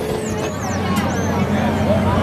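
Fair midway ambience: steady crowd chatter over a low mechanical hum, with a few high-pitched squeals in the first second.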